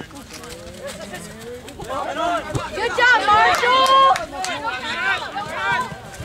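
Several people shouting and calling out across an open field, building to one loud, drawn-out call a little past halfway.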